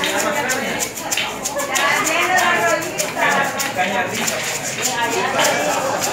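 Homemade shaker maraca made from a coffee can filled with rice, shaken in a steady rhythm: the rice rattles against the can in repeated sharp swishes, a few a second.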